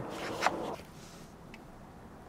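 A plastic card scraping against the plastic cover of a sun visor's ceiling mount as it is wedged in to pry the cover loose, with a sharper click about half a second in. After that only a faint tick is heard.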